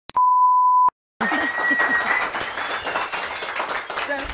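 A steady 1 kHz test-tone beep lasting under a second, the tone that goes with colour bars. After a short silence a dense noisy crowd sound comes in, like an audience.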